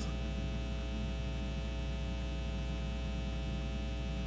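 Steady electrical mains hum, low and buzzy, with a long row of evenly spaced overtones.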